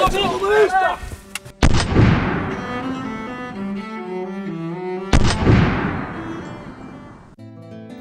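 Two loud gunshots about three and a half seconds apart, each trailing off in a long echoing decay, over slow, low bowed-string music.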